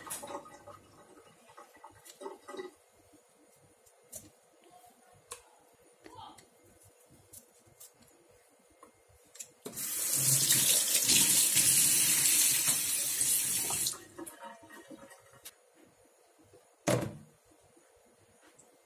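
Kitchen tap running into a stainless steel sink for about four seconds as a pair of kitchen scissors is rinsed under the stream, after a stretch of faint small clicks and handling sounds. A short thump comes near the end.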